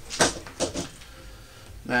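A few short clicks and knocks of small hardware being handled and set down in the first second, the first the loudest.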